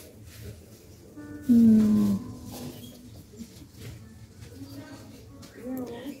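Shop background of faint music and indistinct voices, with one louder held note lasting under a second about a second and a half in.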